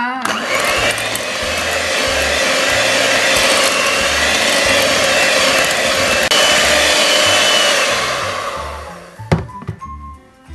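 Electric hand mixer with twin wire beaters running steadily, beating a thick butter cream in a glass bowl. It dies away near the end, followed by a single click.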